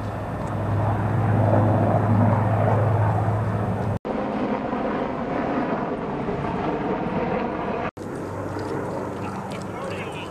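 A steady low engine drone that grows louder over the first few seconds and stops at an edit about four seconds in. Quieter mixed outdoor noise and faint voices follow.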